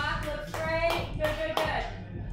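A voice with three sharp hand claps about a second in, spaced roughly a third of a second apart.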